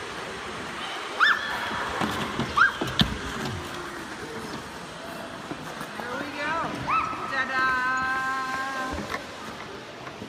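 High-pitched children's voices squealing and calling out: a few short rising squeals, then one long held call near the end, over a steady hiss of rink noise. A sharp knock sounds about three seconds in.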